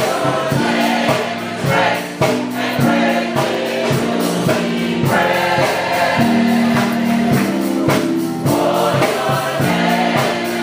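Gospel choir singing in full voice, accompanied by keyboard and drums with a steady beat.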